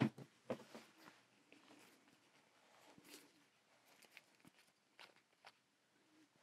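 Faint handling noise of small art-supply bottles being picked up and set down on a craft table: one sharper click at the start, then a few soft scattered ticks in near silence.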